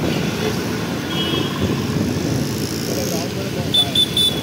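Road traffic noise heard from a moving vehicle on a wet street: a steady, dense low rumble of engines and tyres, with a brief high tone about a second in and another near the end.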